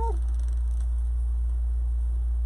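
Room fan running with a steady low hum.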